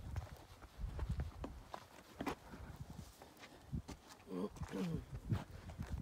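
Quiet outdoor sound: a low rumble under scattered small clicks and crunches, with a brief faint voice about four seconds in.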